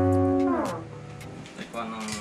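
Tagima TG 530 Stratocaster-style electric guitar: a held chord rings out, then about half a second in its pitch slides down and it fades away. A short, quieter note sounds near the end.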